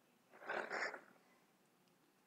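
A single short breath from the speaker into a close microphone, about half a second long, in otherwise near-silent room tone.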